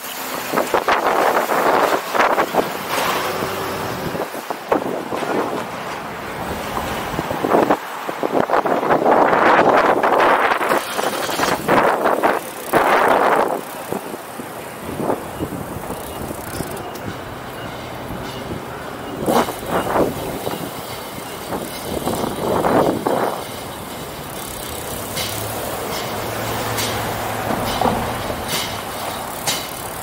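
City street traffic heard from a moving bicycle. Vehicles pass close by in several loud surges between lower stretches of steady road noise.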